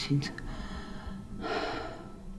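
A woman's gasping breath: one noisy, sharp intake of breath about a second and a half in, lasting about half a second.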